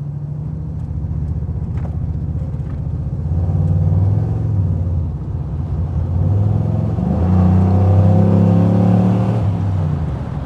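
6.2-litre LS3 V8 engine of a 1960 Chevrolet Bel Air running under way. The engine note builds louder twice as the car accelerates, about three seconds in and more strongly from about seven seconds until near the end.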